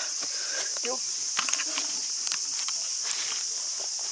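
A steady, high-pitched chorus of cicadas, with scattered crackles and rustles of dry leaf litter and twigs close by.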